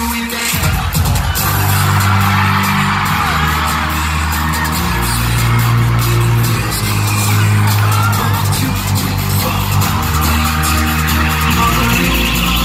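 Loud live pop music through a concert sound system, with deep bass notes held for a few seconds at a time, and a crowd of fans screaming over it.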